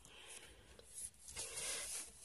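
Faint scratching and rustling of a pencil and a sheet of drawing paper being handled, a little louder near the end.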